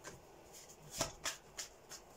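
A deck of tarot cards being shuffled by hand: a handful of short, sharp card snaps, the loudest about halfway through.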